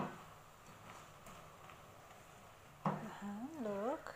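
A single sharp knock at the start as the spatula turns the shrimp in the frying pan, then a quiet stretch. Near the end, a woman hums a short phrase without words, her pitch rising and falling.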